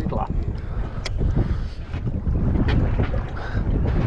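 Wind rumbling on the microphone aboard a small boat at sea, with a few sharp clicks.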